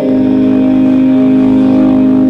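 Church music: a keyboard chord held steady, organ-like, with no attack or decay.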